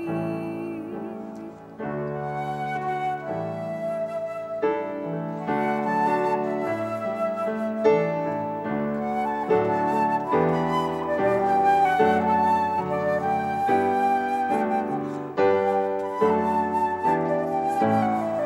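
Flute playing a melody over piano accompaniment, with a brief lull about a second and a half in before the piano chords come back.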